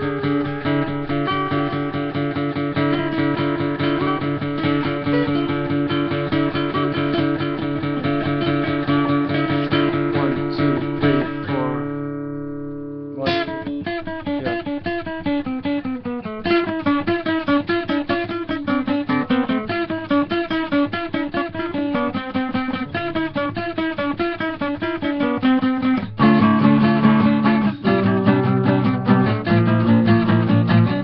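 Two acoustic guitars in C tuning playing a duet of fast picked notes. About twelve seconds in, the playing thins and rings out for a moment, then starts again with a sharp attack. It grows louder and heavier a few seconds before the end.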